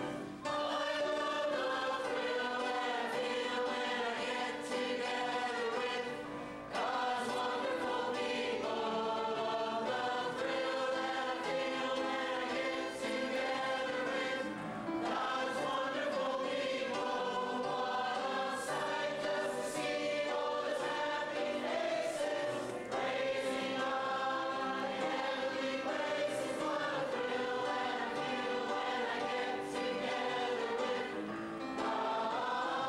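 Mixed choir of men and women singing, with long held notes and a short break between phrases about six seconds in.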